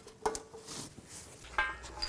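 Quiet handling of a plastic electrical connector, with one sharp click just after the start as its safety lock slides into place.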